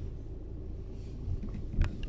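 Steady low rumble inside the cabin of a Volvo XC40 D3 being driven, from its four-cylinder diesel engine and the tyres on the road. A single short knock comes near the end.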